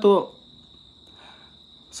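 A man's single spoken word, then a pause of about a second and a half filled with a faint, steady high-pitched whine that runs on unbroken beneath the speech.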